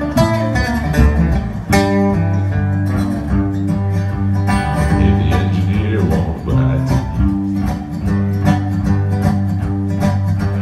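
Acoustic guitar strummed steadily with a second stringed instrument playing along underneath: an instrumental break between the sung verses of a country-blues song.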